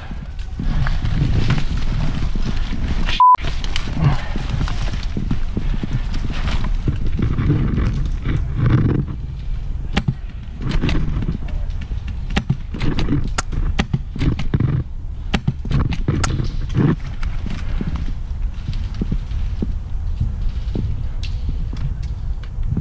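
Rustling and handling noise from a player moving through dry brush and leaf litter, with heavy rumble on the microphone and many scattered clicks. A short, steady beep sounds about three seconds in, right after a brief dropout.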